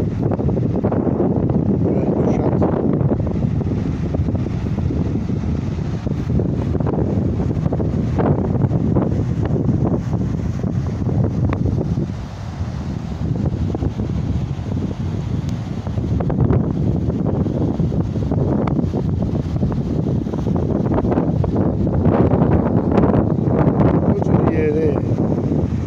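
Wind buffeting the phone's microphone over the steady rush of a fast, turbulent river, with a brief lull about halfway through.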